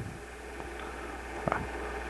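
A steady low hum under a faint hiss, with one faint click about one and a half seconds in.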